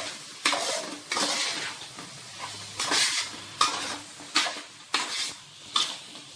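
A metal spoon scraping against a metal pot as pieces of dry fish and vegetables in masala are stirred, about one scrape a second, with the food sizzling underneath.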